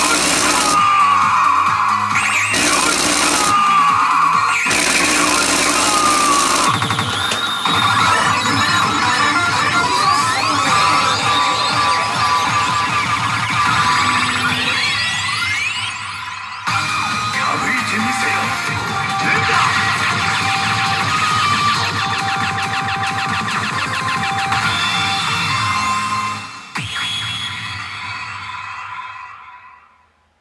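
The P真・花の慶次3 pachinko machine plays loud electronic music and effect sounds through its own speakers as a V-pocket chance sequence runs. Several loud blasts come in the first few seconds, followed by busy rising and falling effect tones, and the sound dies away near the end.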